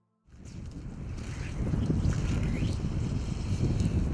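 Wind buffeting the microphone, a low rushing rumble that fades in about a quarter second in and grows louder.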